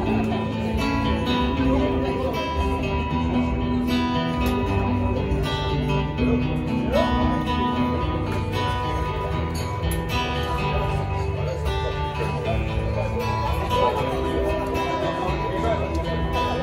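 Acoustic guitar strummed steadily through an instrumental passage of a live pop-rock song, with long held notes underneath.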